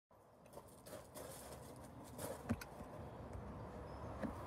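Faint handling noise of a phone being moved about at the start of recording: soft rustles and a few light clicks, with one sharper knock about two and a half seconds in.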